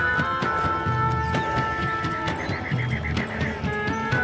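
Film score with sustained notes over low pulses, and a horse whinnying in one quavering call of about a second, starting a little past the middle.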